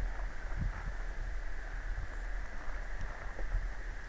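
Low, steady rumbling background noise with a faint hiss, and a few soft knocks about half a second in.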